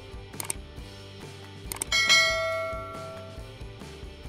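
Subscribe-reminder animation sound effect: a few quick mouse-style clicks, then a bell ding about two seconds in that rings out and fades over a second or so. Soft background music runs underneath.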